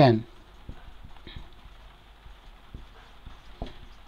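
Marker pen writing on a whiteboard: faint, scattered taps and strokes of the tip against the board, a few at a time.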